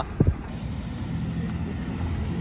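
Water truck's engine running steadily, heard over wind on the microphone, after a brief voice-like sound at the start.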